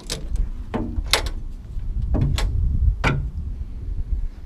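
Land Rover bonnet being unlatched and lifted open: a string of sharp metallic clicks and knocks from the catch, the bonnet panel and its prop rod, over a low rumble.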